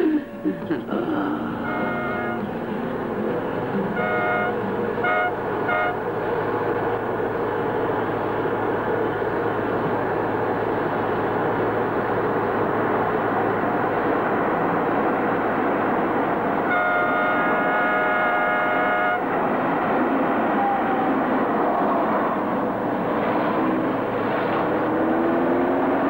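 Steady engine and road noise of a moving motor vehicle, with a car horn honking: one short toot about two seconds in, three quick toots a few seconds later, and one long blast of about two seconds past the middle.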